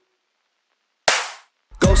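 A hip-hop beat drops out into silence, then a single sharp crack with a short fading tail sounds about halfway through, and the beat comes back in near the end.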